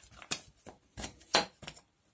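Wooden toy train track pieces and small wooden joiners being handled, clacking against each other and the wooden workbench: a quick run of about seven short knocks, the loudest about a second and a half in.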